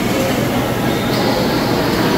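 Steady background din of a busy buffet dining hall: indistinct voices and room noise, with a low steady hum underneath.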